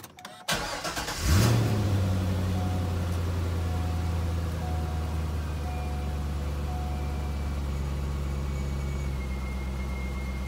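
2003 Chevrolet Corvette's 5.7-litre V8 cold start: a brief crank, the engine catching with a rev flare about a second in, then settling into a steady idle that drops a little near the end.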